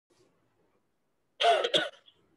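A man coughing twice in quick succession, about a second and a half in.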